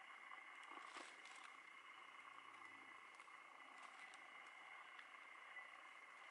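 Near silence: a faint steady hiss with a few faint ticks.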